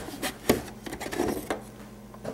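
Handling noise from a portable TV's plastic cabinet being tipped onto its side: a few light knocks and clicks against the countertop, the sharpest about half a second in, with rubbing in between.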